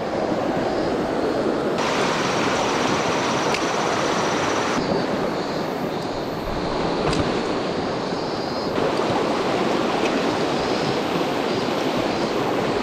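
Mountain stream running over rocks: a steady rush of water, its tone shifting abruptly a few times.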